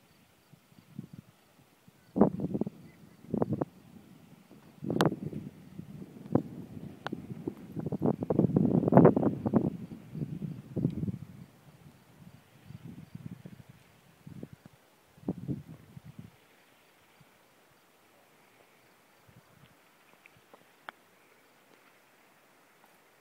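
Wind buffeting the microphone in irregular low rumbling gusts, strongest about eight to ten seconds in, then dying away after about sixteen seconds to a faint, nearly still background.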